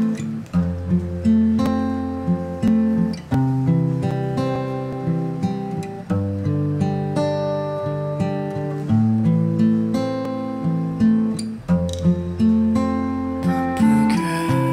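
Instrumental intro of a ballad backing track: chords played over a held bass line, with no singing.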